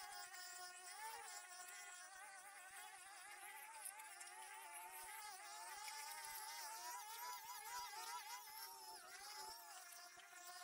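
Petrol brush cutters running at high revs: a steady engine whine whose pitch wavers up and down slightly as the heads cut through the weeds.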